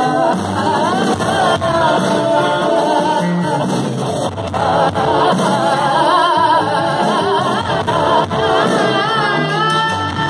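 Live band playing a Bengali rock song: a woman sings the melody into a microphone, with backing voices, over electric guitar and bass.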